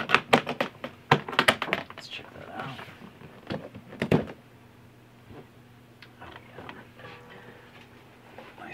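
Metal latches of a hardshell guitar case being snapped open: a quick run of sharp clicks in the first two seconds, then two more loud clicks about four seconds in, followed by a quiet stretch.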